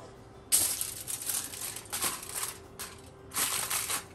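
Aluminium foil crinkling and rustling as a sheet is picked up and handled, in a few bursts with a short lull about three seconds in.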